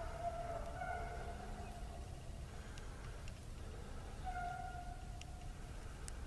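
A pack of rabbit hounds baying faintly in the distance while running a rabbit: two spells of long, drawn-out howls, one at the start and another near the end.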